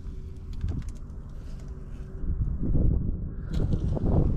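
Wind buffeting the microphone: an uneven low rumble that swells in two stronger gusts in the second half, over a faint steady hum.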